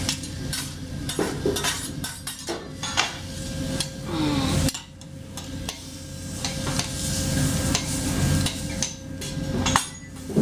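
Metal spatulas clacking and scraping on a teppanyaki griddle in quick irregular strokes as the chef chops and turns rice, with food sizzling underneath and a faint steady hum.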